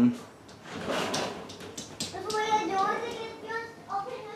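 A brief scraping or rustling noise about a second in, then a young child's voice talking faintly from farther off.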